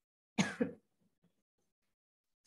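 A person clearing their throat once, briefly, about half a second in.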